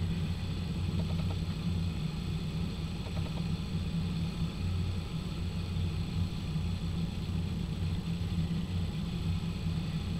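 Steady low hum with a faint hiss, unchanging throughout.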